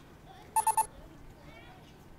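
Auvi-Q epinephrine auto-injector trainer giving three quick electronic beeps on being opened: the signal that it has switched on and is about to give its spoken instructions.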